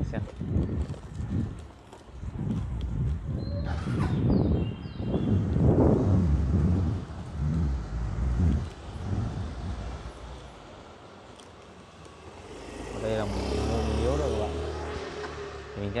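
Wind buffeting the microphone in uneven gusts of low rumble while riding along on an electric bicycle, easing off for a couple of seconds past the middle. Indistinct talk comes in near the end.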